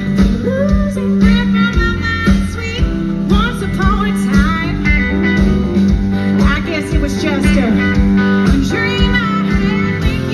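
A live blues-rock band playing loudly, with a lead guitar line of bent, wavering notes over drums and bass.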